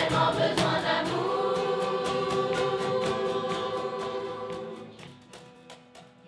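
Children's choir singing over a steady cajón beat, settling about a second in on a long held chord that fades out near the end.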